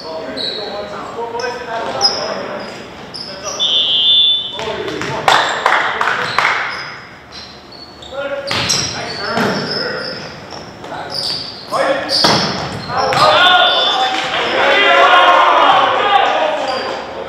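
Volleyball rally in a gym: sharp smacks of the ball being hit and striking the floor, short high squeaks of sneakers on the court, and players shouting to each other, all echoing in the large hall. The shouting is loudest near the end.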